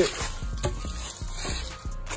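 Scuffing footsteps on gravel and concrete, with a few light knocks from a carried car jack.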